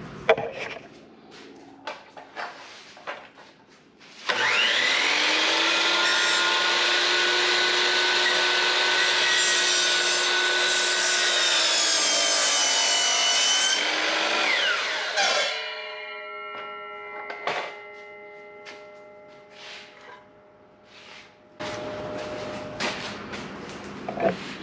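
DeWalt miter saw cutting a 2x6 board in half at an angle. After a few knocks of the board being set in place, the saw starts about four seconds in and runs loud and steady through the wood for about ten seconds. Its pitch then falls as the blade spins down, leaving a fading ring.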